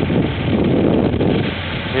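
Wind buffeting the microphone: a loud, steady rushing rumble.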